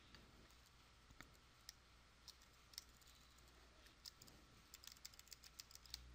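Near silence broken by a dozen or so faint, scattered clicks from a computer keyboard and mouse being handled at a desk, irregularly spaced.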